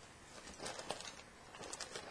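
Artificial craft flowers being rummaged through and handled in a plastic bin: a run of light clicks and rustles of plastic stems and petals.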